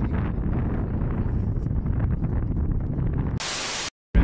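Wind buffeting a phone microphone, an uneven low rumble. About three and a half seconds in, it gives way abruptly to half a second of flat static hiss that cuts off sharply: an inserted static sound effect at an edit.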